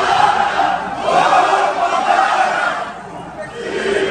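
Football supporters in the stands chanting in unison: many voices in long sung phrases, easing off about three seconds in and picking up again near the end.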